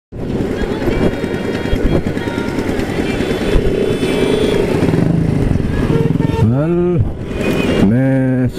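Motorcycle engine running, with wind and road noise, heard from the rider's seat as the bike rides slowly through traffic. About six and a half seconds in, a brief voice sound rises and falls over the engine.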